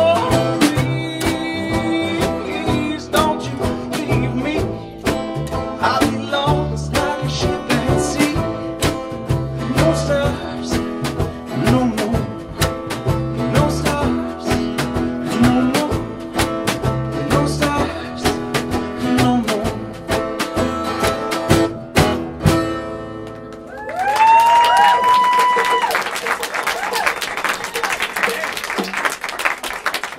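Live folk band, acoustic guitar and upright bass, playing out the end of a song with a steady strummed beat. The music stops about three-quarters of the way through, and the audience cheers and applauds.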